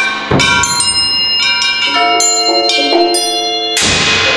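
Percussion quartet playing struck metal percussion: bell-like tones ring on and overlap. There is a sharp hit about a third of a second in, several further strikes in the middle, and a loud hit near the end.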